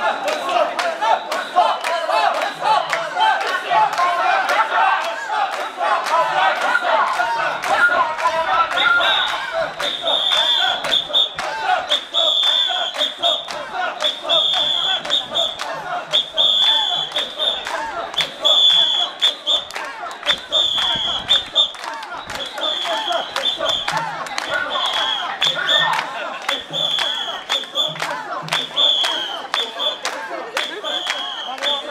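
A crowd of mikoshi bearers chanting in unison as they carry a portable shrine, amid crowd noise and many short knocks. From about a third of the way in, short high whistle blasts repeat about once a second, keeping time with the bearers.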